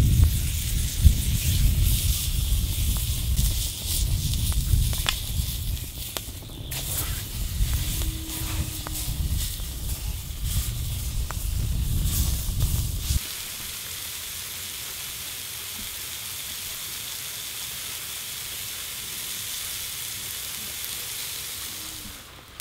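Beef tongue sizzling on a heavy steel plate over a wood fire, with a low rumble and scattered sharp clicks. About thirteen seconds in, the rumble stops abruptly, leaving a steady even hiss.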